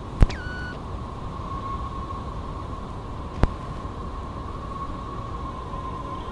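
Steady hiss and low rumble with a faint constant tone, broken by two sharp clicks about three seconds apart; the first click trails into a short falling whistle.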